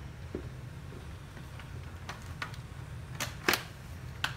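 Recline mechanisms of double-stroller seats being worked by hand: a scattering of short sharp clicks, the loudest two close together about three and a half seconds in.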